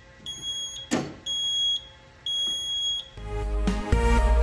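Fire alarm control panel's built-in sounder beeping in high-pitched pulses of about half a second, roughly once a second, with a sharp knock about a second in as the panel is handled. Electronic music starts near the end.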